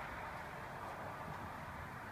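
Steady outdoor background noise, an even hiss with no distinct events in it.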